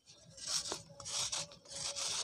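Knife blade shaving a round of dry pure cement: about three rasping scrapes, roughly two-thirds of a second apart, starting a moment in.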